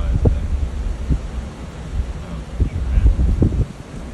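Storm wind buffeting the phone microphone in uneven gusts: a low rumble with several short pops.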